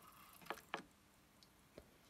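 Near silence broken by two faint clicks about half a second in and a smaller one near the end, from a dual DJ CD player as its front-panel buttons are pressed.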